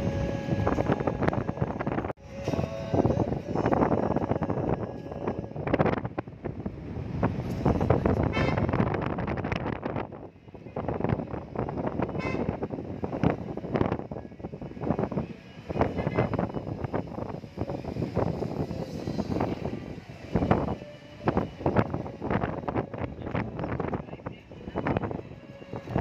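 Car driving along a road, heard from inside the car, with uneven gusts of wind buffeting the microphone over the road noise.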